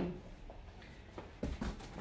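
A few faint, short knocks and taps from hardback and paperback books being handled and set down, in a quiet small room.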